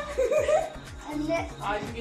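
Excited voices and laughter over background music with a regular low beat.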